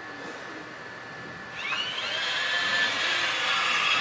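Small wheeled robot's electric drive motors whining as it drives across the carpet. The whine starts about a second and a half in, rises quickly in pitch, then holds steady and grows louder as the robot comes closer.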